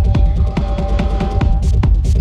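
Techno music from a DJ mix: a heavy, steady kick-drum beat under sustained synth tones, with the drum hits briefly thinning out for about a second in the middle.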